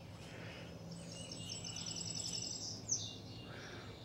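Faint outdoor background with a high, rapid chirping trill lasting about two seconds, ending in a short falling chirp.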